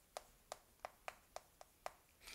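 Chalk tapping and stroking on a blackboard while writing: a series of about seven faint, short taps, roughly three a second.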